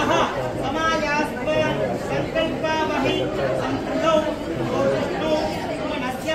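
Several people talking at once: chatter of voices in a room.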